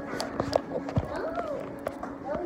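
A girl's voice vocalizing without clear words, one sound held and then sliding up and down, over a series of knocks and rubs from the phone being handled and moved.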